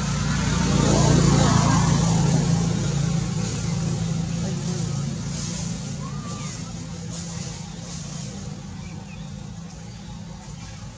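A motor vehicle passing by, loudest about a second in, then slowly fading away.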